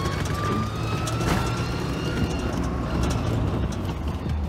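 Lifted Geo Tracker's four-cylinder engine and drivetrain running under way off-road, heard from inside the cab as a steady low rumble. A thin whine climbs slowly in pitch through the first couple of seconds, and scattered ticks and rattles come from the body.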